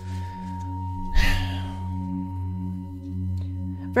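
Ambient background music of low held tones with a higher ringing tone over them, like a singing-bowl drone. About a second in comes a short rustling noise.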